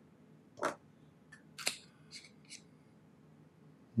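A handful of faint, short clicks and light scrapes from a Nahvalur Original Plus fountain pen and its cap being handled, the sharpest click about a second and a half in.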